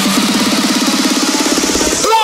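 Electronic dance music build-up: a low synth note repeats faster and faster into a rapid buzzing roll, under a rising swell of noise.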